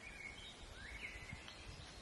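Faint woodland birdsong: a few thin whistled notes, some rising and some held, over a low background rumble.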